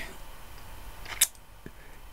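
A pause in speech: low room tone, broken by one brief hiss just over a second in.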